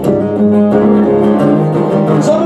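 Acoustic guitar strummed, chords ringing and changing, with a fresh strum right at the start.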